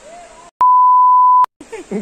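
Censor bleep: a single steady high-pitched beep lasting under a second, cut in abruptly over the dialogue with dead silence just before and after it, masking a spoken word.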